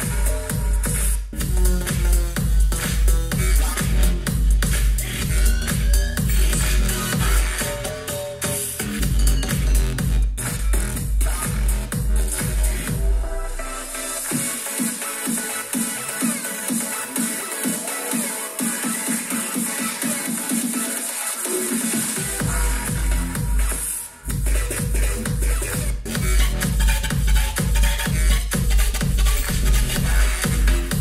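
Bass-heavy electronic dance track played aloud through a Devialet Phantom wireless speaker, with a steady beat and deep bass. About halfway through, the deep bass drops out for several seconds, and a rising sweep leads back into it.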